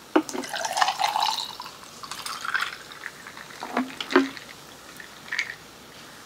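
Sports drink poured from a plastic bottle into a glass mason jar, the pouring note rising as the jar fills. A few light knocks follow.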